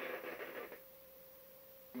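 Near silence: a faint fading murmur in the first second, then a faint steady mid-pitched hum.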